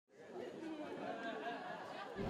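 Faint chatter of several people talking at once in a crowd.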